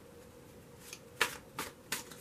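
A deck of tarot cards being shuffled by hand: after a quiet start, a quick run of sharp crisp card snaps begins near the middle, the loudest about a second in.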